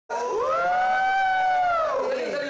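A long, high-pitched 'whoo' cheer that rises, holds, then falls away, with a second voice joining lower.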